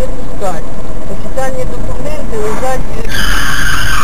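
Car dashcam audio: road and engine rumble under a voice, then about three seconds in a loud, steady high-pitched tone sets in for the last second.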